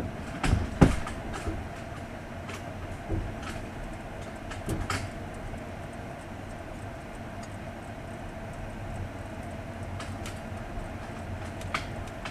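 Sleeper train's couchette car heard from inside as the train pulls slowly out of a station: a steady running hum broken by irregular knocks and clicks of the wheels on the track, the two loudest about a second in.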